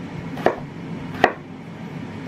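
Chef's knife chopping raw potato on a wooden cutting board: two sharp chops about a second apart.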